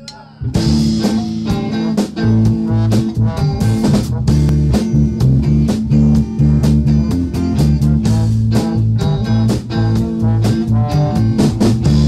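Live rock band with electric guitar and drum kit, crashing in together about half a second in and playing on at full volume with steady drum hits under held low guitar notes. The drums sound close.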